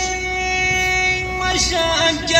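A man singing one long held note in a song; the pitch stays steady for about a second and a half, then drops into the next phrase near the end.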